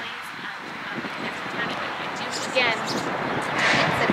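A woman's voice speaking over microphones, with a low engine rumble from passing traffic or an aircraft that fades out right at the end.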